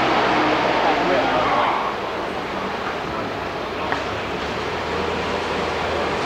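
Indistinct voices of people talking in the background over a steady, dense room noise in a large warehouse. There is a single short tap just before four seconds in.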